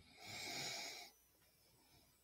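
A person's breath, a single exhale into a microphone lasting about a second, then faint room noise.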